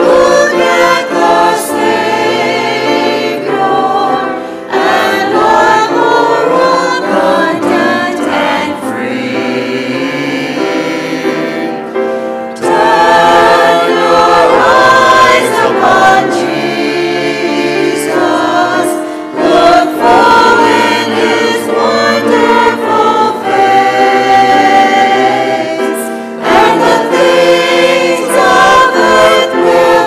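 A small mixed choir of men and women singing a hymn anthem with grand piano accompaniment, in phrases with brief pauses between them.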